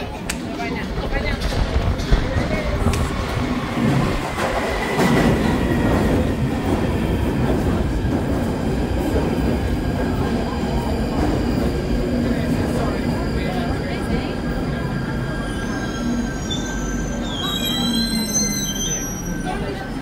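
London Underground Northern line tube train running into the platform from the tunnel, rumbling steadily as it passes. A high, bending squeal starts about three-quarters of the way through as it slows to stop.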